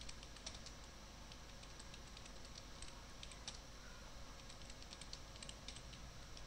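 Faint typing on a computer keyboard: irregular keystroke clicks, some in quick little runs.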